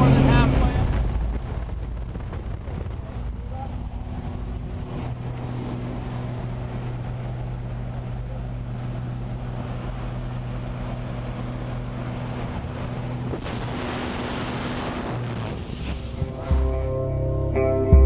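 A small propeller plane's engine droning in the cabin. About a second in it drops to a lower, steady drone, as when power is pulled back for the jump. Rock guitar music comes in near the end.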